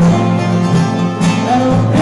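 Live bluegrass music: a strummed acoustic guitar and a bowed fiddle, with a man singing.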